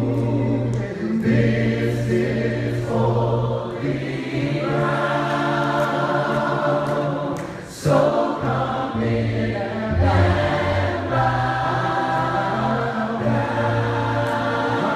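Choir singing a slow worship song in long held chords, with a short break about eight seconds in before the voices come back in loud.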